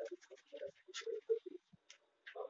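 Batter being stirred in a miniature steel bowl: quick, irregular scratchy scrapes with small clinks, several a second.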